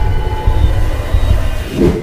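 Dark cinematic intro soundtrack: a dense, deep rumble with faint held tones above it, swelling near the end.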